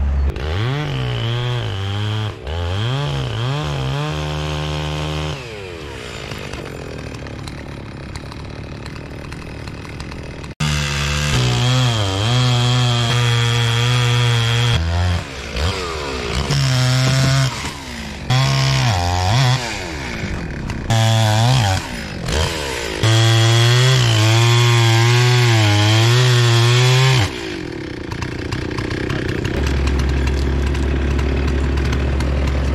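Gas chainsaw bucking felled tree trunks, its engine revving up and down repeatedly as it cuts and eases off. In the last few seconds it gives way to the low, steady running of the mini excavator's diesel engine.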